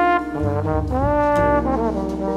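Trombone solo in a modern jazz ensemble: a legato melodic line with short slides between notes, over piano and bass accompaniment.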